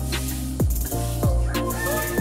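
Chickens clucking and a rooster crowing over electronic background music with a deep, heavy beat. The rooster's long crow begins near the end.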